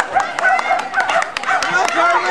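Terrier yapping excitedly in rapid, high-pitched yips, several a second.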